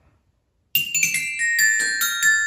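Small glockenspiel's metal bars struck with a mallet: a quick run of about seven notes begins about three-quarters of a second in, each bar ringing on under the next.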